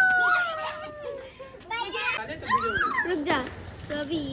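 Children's excited voices calling and shouting, opening with one long, slowly falling call followed by shorter cries.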